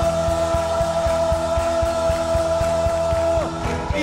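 Live worship band playing over a steady drum beat, with keyboard and electric guitar. One long note is held for about three seconds and breaks off shortly before the end.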